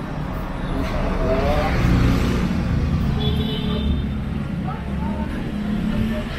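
Road traffic running, with a vehicle engine swelling and passing about one to three seconds in, and people talking in the background.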